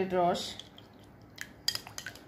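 A few sharp clinks of a metal spoon against a ceramic bowl near the end, as the bowl of tamarind water is lifted and tipped to pour. A woman's voice trails off in the first half second.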